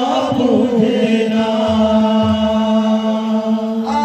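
Male kirtan singers chanting together, holding one long steady note for most of the time before breaking into a higher phrase near the end, with a few low drum beats underneath.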